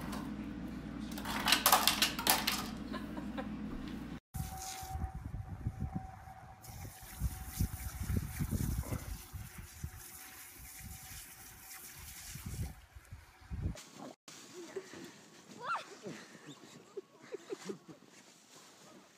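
A refrigerator door dispenser running with a steady hum as a dog works it, with a short burst of louder noise about a second and a half in. After a cut, an oscillating lawn sprinkler's spray hisses over low wind rumble on the microphone. Faint voices follow in the last few seconds.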